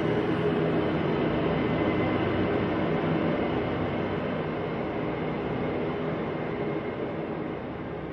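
A dense, rumbling ambient drone from the poem's accompanying music score, with a few faint held low tones, slowly fading.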